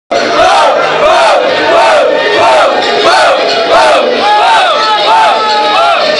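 A crowd chanting in unison: the same rising-and-falling shout repeated about nine times, roughly every two-thirds of a second, starting abruptly.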